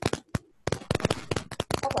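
Loud, sharp pops and crackles in rapid, irregular clusters, with a short lull about half a second in. The noise comes through the video call from a participant's open microphone.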